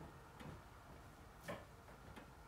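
Near silence with two faint, short knocks about a second apart.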